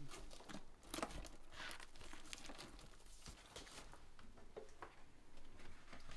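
Vinyl LP sleeves being flipped through by hand on a shelf: a faint, irregular run of cardboard rustles and swishes as the records slide against each other.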